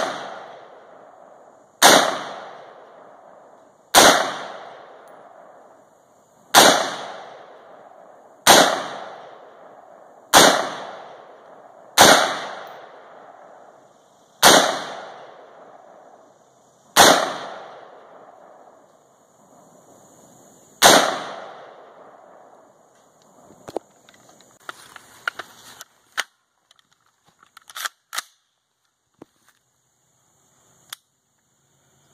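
AR-15-style rifle fired semi-automatically, nine single shots spaced about two seconds apart, each ringing out and fading over a second or more. After the last shot come a few small clicks and rattles of handling.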